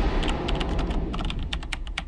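A quick, irregular run of sharp clicks, like typing on a keyboard, over a low rumble that slowly fades out.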